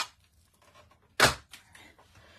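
One short clack, about a second in, of a stack of clear plastic die-cutting plates being set down on a work mat; otherwise the handling is quiet.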